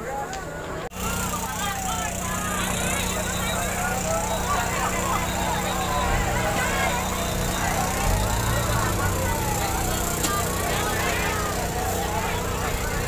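Fire engine siren wailing in slow falling-and-rising sweeps every few seconds, over a steady engine hum and the chatter of a large crowd. The sound cuts out briefly about a second in.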